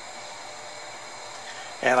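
Steady low background hiss of room tone, with no hum or clicks; a man's voice begins near the end.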